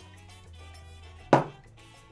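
Quiet background music with steady low notes. About a second and a half in comes one sharp knock: a glass shot glass set down hard on the table.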